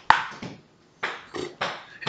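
One sharp knock right at the start, fading over about half a second, followed by a few short breathy puffs.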